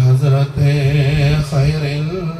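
A man chanting a devotional hymn into a microphone, his amplified voice holding long notes with wavering, ornamented pitch.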